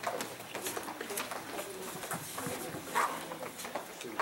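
Young children moving about and settling on the floor, with scattered footsteps and shuffles and a brief high child's voice about three seconds in.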